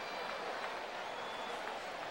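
A large stadium crowd cheering and applauding steadily.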